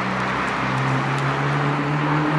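Tesla Model S electric car creeping slowly under Smart Summon, tyres rolling on asphalt with a steady low hum.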